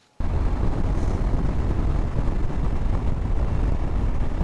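Steady wind noise from riding a Husqvarna Norden 901 motorcycle at 65 mph, heavy and low, cutting in suddenly a moment in. It is windy and noisy behind the stock windscreen.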